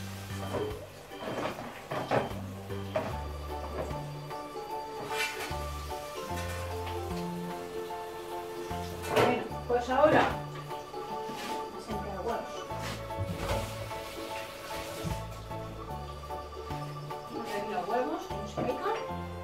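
Background music with a steady bass line and held notes, over a few knocks and clatters of kitchenware, the loudest about nine to ten seconds in.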